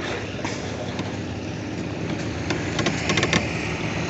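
A small engine running steadily, with a few light clicks about three seconds in.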